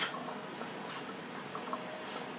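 A hookah being drawn through its hose: water bubbling quietly in the base as he inhales.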